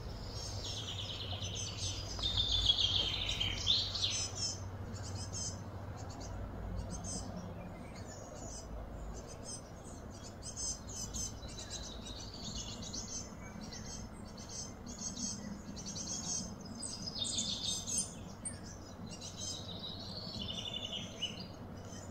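Small birds chirping and singing in repeated high phrases, loudest about two to four seconds in and again near eighteen seconds, over a low hum that fades out about nine seconds in.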